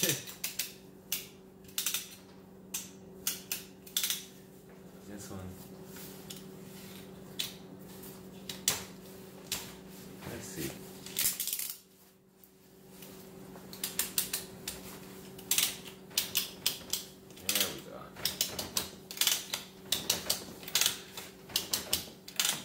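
Ratchet buckle on a boat cover's tie-down rope clicking as the rope is pulled through and tightened, the rope catching in the buckle's grooves. The clicks come now and then at first, pause briefly about halfway, then come fast and steady through the second half. A steady low hum runs underneath.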